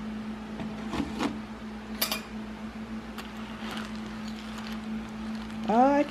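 A few light clinks and knocks of a metal spoon and dishes around a ceramic cereal bowl, the sharpest about two seconds in, over a steady low hum.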